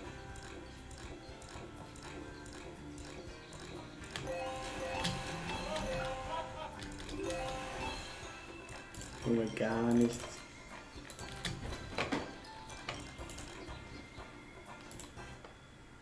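Greedy Wolf online slot game audio: jingly game music and reel sound effects with clicks as the reels spin and stop. A short bending voice-like effect is the loudest sound, a little past halfway.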